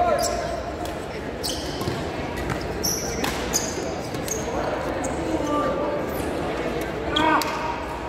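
Badminton rally: a few sharp racket strikes on the shuttlecock and shoes squeaking on the court floor. A chatter of voices echoes in the large hall behind it.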